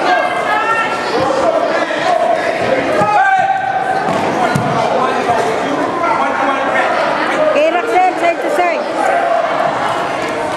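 Overlapping voices of spectators and coaches talking and calling out in an echoing gymnasium, with one louder call about eight seconds in and a few thuds from the sparring on the gym floor.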